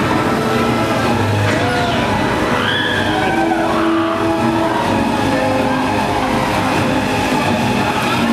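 Talocan, a Huss Suspended Top Spin ride, running: a loud, steady rumble of the ride and its flame effects as the gondola swings, with a few high rising-and-falling cries from the riders near the middle.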